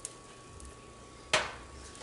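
A metal spoon clinks sharply once against kitchenware about a second in, while filling is spooned onto a tortilla. A faint steady hum runs underneath.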